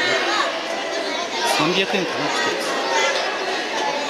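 Many children's voices chattering at once, overlapping and echoing in a large indoor hall.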